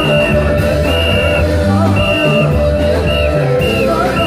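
Loud live praise music: a band playing an upbeat groove, with a moving bass line under held chords and a short high figure repeating about once a second.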